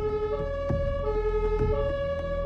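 German two-tone emergency siren (Martinshorn) on an ambulance responding to a call, alternating between a low and a high tone, each held a little over half a second. Low vehicle and traffic rumble lies underneath.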